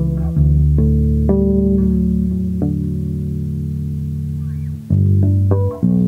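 Solo fretless electric bass playing a free-jazz line. A few plucked notes lead into a chord that is left to ring for several seconds and slowly fades, and new plucked notes come in near the end.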